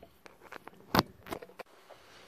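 Handling noise as a microphone and its cable are handled and plugged in: a few short sharp clicks and knocks, the loudest about a second in.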